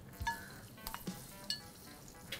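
Hot oil poured onto a bowl of chili-oil sauce, giving only a faint sizzle, with a few light clinks.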